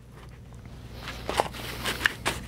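Light handling noises: a few soft knocks and rustles as a pistol is lifted out of a foam-lined steel lockbox and a holster is picked up, over a faint steady low hum.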